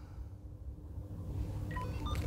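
Motorola CLP107 two-way radio giving a few short, faint electronic power-on tones near the end as it is switched on.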